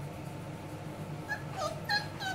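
Young Australian Shepherd puppy giving three short, high-pitched whimpers that begin about a second in, each dipping in pitch, over a faint steady low hum.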